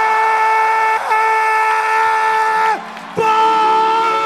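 A horn sounding long, steady, single-pitched blasts over crowd noise. There is a short catch about a second in, then the tone sags in pitch and cuts off a little before three seconds, and a fresh blast starts just after three seconds.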